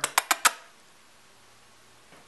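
Four sharp clicks in quick succession, then only faint room tone.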